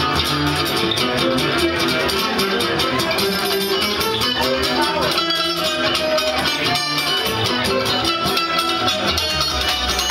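Live instrumental band music: acoustic guitar and a second guitar playing plucked and strummed parts over an upright double bass, steady and continuous.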